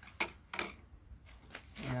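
Two short, sharp clicks about a third of a second apart, from handling the young trees and their wrapping, then a man starts speaking near the end.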